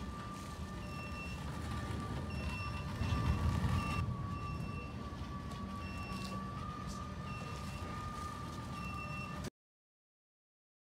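Self-propelled robot pallet wrapping machine running as it circles a pallet: a steady motor whine over a low rumble, with short beeps repeating every second or two. It all cuts off suddenly near the end.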